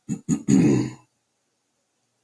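A man's short wordless vocal grunt: two brief catches of the voice, then a longer low 'mm'-like sound, all within the first second.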